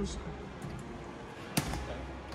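A single sharp knock from a claw machine being played, about one and a half seconds in, over a low steady hum.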